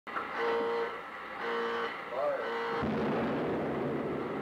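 Intro sound: three short held tones, with a brief rising-and-falling tone between the second and third. A deep rumble starts about three-quarters of the way in and begins to fade near the end.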